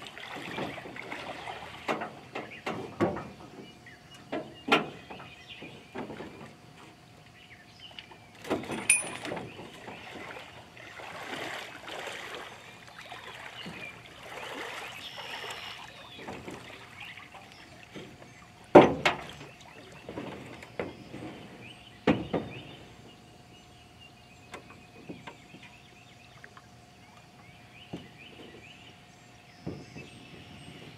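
Scattered knocks and clanks from an old aluminum boat hull being worked loose and shifted in a pickup truck bed, with splashing from wading in shallow water. The loudest clank comes a little past the middle.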